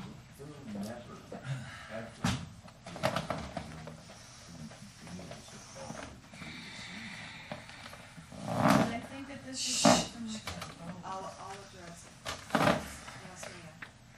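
Indistinct low voices and people moving in a small room, with several sudden bursts of noise and knocks; the two loudest come about nine and ten seconds in.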